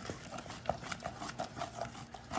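Wooden spoon beating thick praline candy with pecans in a stainless steel saucepan, with irregular clicks and knocks of the spoon against the pan. The candy is being stirred off the heat as it cools, thickens and turns grainy.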